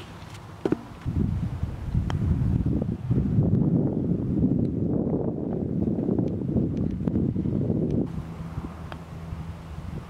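Wind buffeting the microphone: an uneven low rumble that sets in about a second in and eases near the end, after a faint click.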